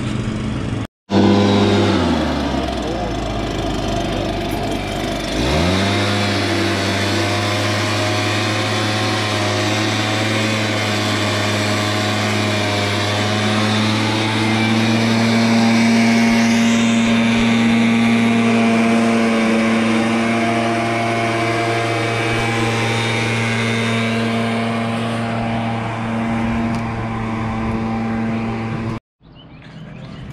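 Gas backpack leaf blower engine dropping toward idle, then throttled back up about five seconds in and held at a steady high speed with a slight waver.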